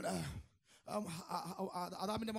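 A man preaching into a handheld microphone, speaking in short phrases with a brief pause about half a second in.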